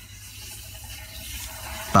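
Ballpoint pen writing on paper: a faint, steady scratching of the tip across the page.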